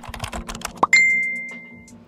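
Keyboard typing sound effect, a quick run of clicks, then a short rising pop and a single bright ding that rings on for about a second as it fades: a logo sting.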